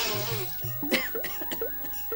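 A man coughs into a cloth near the start, over background music: a repeating pattern of short notes with low bass notes beneath.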